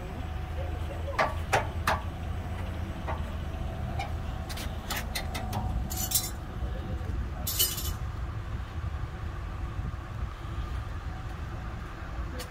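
A series of sharp metallic clicks and clinks, a few in the first two seconds and a quicker run around five seconds in, over a low steady rumble, with two short hisses about six and seven and a half seconds in.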